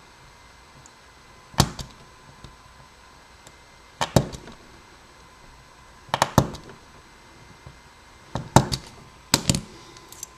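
Small file scraping a brass key blank through each of the five pin chambers of a desk lock plug, five short metallic scratches a couple of seconds apart, marking the spacing for the key cuts.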